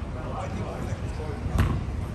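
A futsal ball kicked on the pitch: one sharp thud about a second and a half in.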